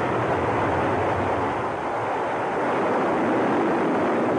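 MGM-52 Lance missile's liquid-fuel rocket booster burning just after launch: a loud, steady rushing noise that holds without let-up.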